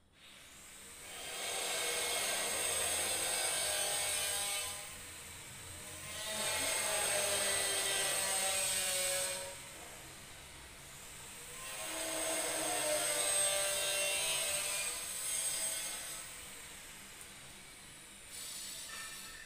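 A power tool running in three bursts of about three to four seconds each, with a high whine, separated by short breaks.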